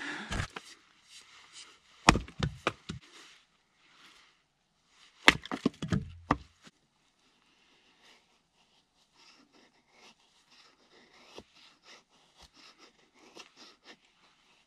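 Long-handled splitting axe striking firewood twice, about three seconds apart, each loud chop followed by a quick clatter of cracking wood and falling pieces. In the second half, faint light taps of a small axe splitting kindling on a chopping block.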